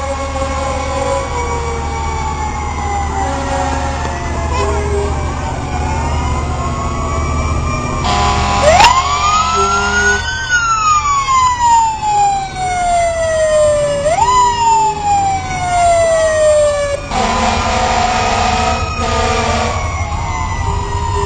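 Several emergency-vehicle sirens wailing at once as parade vehicles pass. About nine seconds in, one siren winds up sharply and falls slowly, rises again a few seconds later and falls away, with horn blasts at about the same time and again near the end, over engine rumble.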